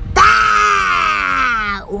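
A woman's long drawn-out vocal groan, one sustained sound that starts high and slides steadily down in pitch, lasting about a second and a half.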